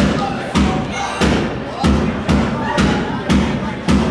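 A live rock band playing: a drum kit struck in a steady beat of about two hard hits a second, with electric guitar.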